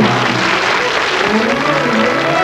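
Audience applauding while a live orchestra keeps playing underneath the clapping.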